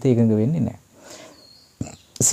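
A man's voice holding one drawn-out vowel sound, falling in pitch, for under a second, then a short quiet pause before he speaks again.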